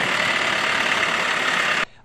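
A utility truck's engine running, heard as a steady, dense rush of noise that cuts off suddenly near the end.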